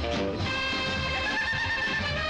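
Upbeat dance-band music with a male singer. After a short sung phrase, he holds a long note with a slight vibrato over the band from about half a second in.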